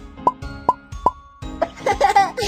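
Three short cartoon 'pop' sound effects about 0.4 s apart, each a quick bloop, followed near the end by a child's giggling over background music.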